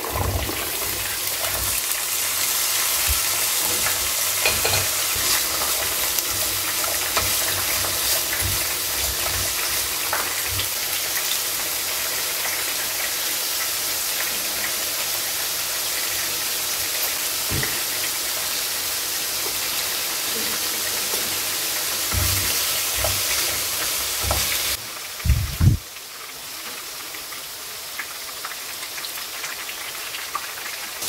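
Green beans and diced carrots stir-frying in a hot nonstick wok: a steady sizzle, with the spatula clicking and scraping as it tosses the vegetables. About 25 s in, the sizzle drops away after a couple of knocks, and a quieter sizzle of corn fritters frying in oil follows.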